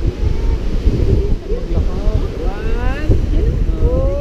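Wind buffeting the microphone in an irregular low rumble, over surf washing up on the shore, with brief voices calling out in the second half.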